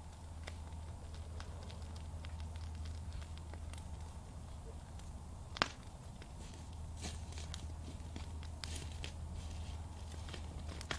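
A small fire crackling and popping, with scattered sharp snaps and one louder pop about five and a half seconds in, over a steady low hum.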